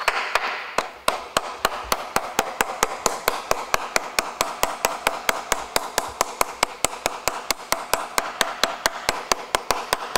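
Steel ball-peen hammer tapping rapidly and evenly, about five light strikes a second, peening copper rivets down over their washers to set them on a thick leather axe sheath laid on a wooden block.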